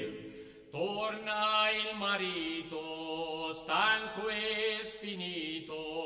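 Unaccompanied male folk singing: a held choral chord fades at the start, and about a second in a single man's voice begins singing a line of the ballad in several short phrases.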